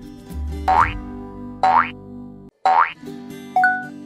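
Light background music with three quick rising cartoon 'boing' sound effects about a second apart, then a short ding near the end that marks the answer being revealed.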